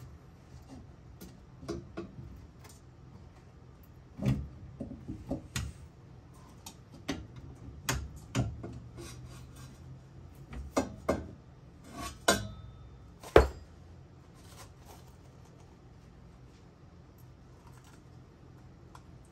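Hand wrench clinking and knocking against metal line fittings while the HICAS hydraulic lines are being undone under the car: irregular metallic clicks and taps with short gaps, the loudest a sharp knock about 13 seconds in, then a few quiet seconds near the end.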